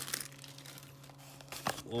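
Faint crinkling of plastic shrink-wrap and cardboard as a sealed trading-card booster box is opened, with a few short crackles about three-quarters of the way through.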